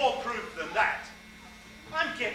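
A person speaking on a stage, the voice carrying through the hall, over a steady electrical hum.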